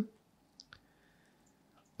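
Quiet room tone with two short, faint clicks a little over half a second in.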